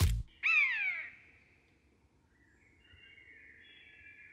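A music track ends on a last beat, then a single falling bird-like cry lasting about half a second. Faint, high bird-like chirping follows from about halfway through.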